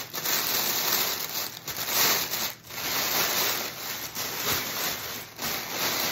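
Clear cellophane wrap crinkling and rustling as it is gathered up around a gift basket by hand, with two brief lulls.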